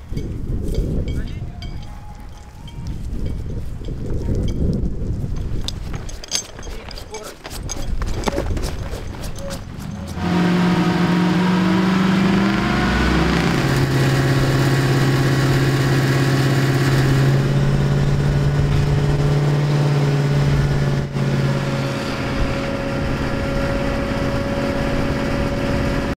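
Fire engine's engine running its water pump: a loud, steady drone that starts suddenly about ten seconds in and shifts pitch in steps a few times. Before it there is a low rumble with scattered clicks.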